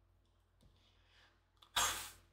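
Near silence, then a short, sharp breath of air near the end, a quick exhale through the nose or mouth.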